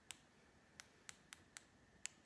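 Small switches on a pair of LED finger lights clicking as they are switched off: about five sharp, separate clicks, irregularly spaced.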